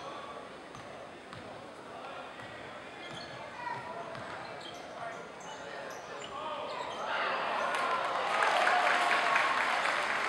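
Indoor basketball game: a ball dribbling on the hardwood court, sneakers squeaking and crowd voices in the gym. About seven seconds in, the crowd noise swells louder with shouting.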